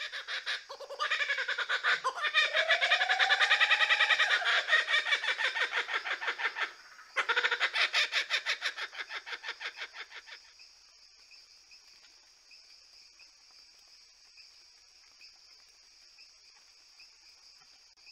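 Laughing kookaburra laughing: a long run of rapid, loud cackling notes that rise and fall in pitch, a brief break about seven seconds in, then a second run that fades out by about ten seconds. After that only a faint steady high-pitched buzz remains.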